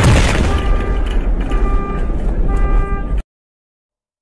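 A loud boom-like sound effect strikes at the start and dies away in a noisy rumble with a few faint held tones. It cuts off abruptly about three seconds in.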